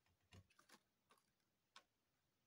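Near silence broken by about five faint, light clicks and taps as metal tweezers and a paper card are handled.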